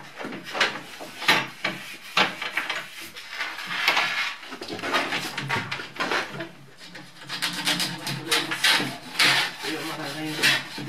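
Hand-worked rubbing strokes along a cross-country skate ski's base during ski preparation, a rough scraping rub repeated about once a second.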